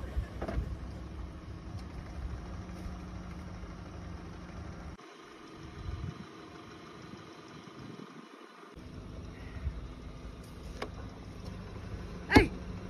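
A car engine idling, a steady low hum whose lowest part drops away for a few seconds around the middle.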